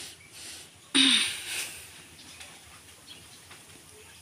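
A woman's breathing between words: a breathy intake at the start, then about a second in a sudden loud breathy exhale with a short falling voiced sound, like a sigh or a breathy laugh, then quiet breathing.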